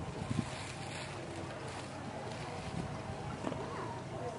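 Wind rumbling on the microphone, with a few faint thuds.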